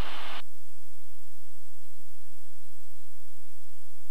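Steady, dull drone of a Cirrus SR20's single piston engine and propeller heard inside the cockpit, throttled back to about 50% power. The higher sounds drop away about half a second in, leaving only a low hum.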